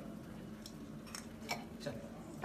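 Four light, sharp clicks or taps spread over two seconds, faint, over a steady low hum.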